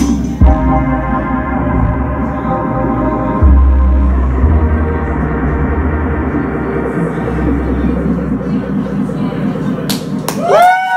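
Live electronic music on synthesizers: deep sustained bass notes under layered held chords, with a loud hit near the start and the bass shifting pitch a few seconds in, near the end of a song.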